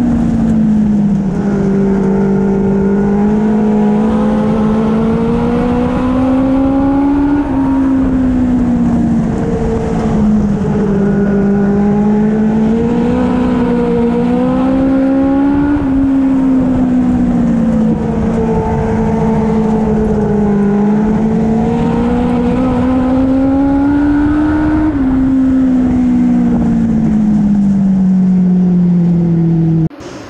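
Legend race car's Yamaha four-cylinder motorcycle engine at racing speed on a dirt oval, heard loud from inside the cockpit. The engine note climbs slowly and drops off sharply, three times, about every eight to nine seconds, lap after lap.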